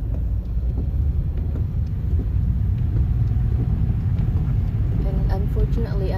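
Steady low rumble of a car's engine and road noise heard from inside the moving car's cabin.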